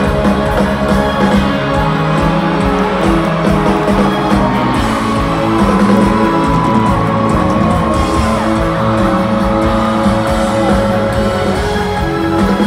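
Live rock band playing a loud instrumental passage with electric guitar, drums and bass in a large arena; a high held note bends and slides down around the middle.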